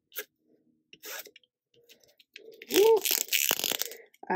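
Paper being handled on a desk: a few soft taps and rustles, then a louder burst of paper rustling in the last second. A short voiced sound comes just before it.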